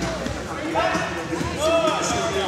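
Voices shouting and calling out in a large echoing hall: two rising-and-falling calls, about a second in and near the end, over a background hubbub, with a few dull thumps.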